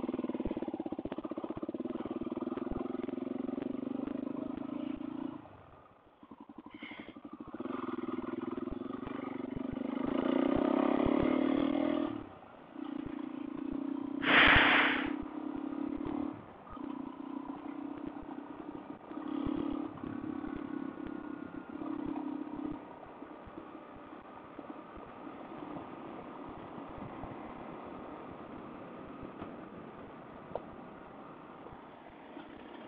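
Suzuki DR-Z400 single-cylinder four-stroke engine running as the bike rides a gravel road. The engine note dips and comes back several times as the throttle is opened and closed, with gravel clatter under the tyres. A short, loud rush of noise comes about halfway through, and the engine sound settles to a quieter steady rumble over the last several seconds.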